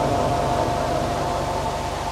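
Steady hiss and hum from an amplified public-address system left open between phrases, with a steady ringing tone riding on it and slowly fading.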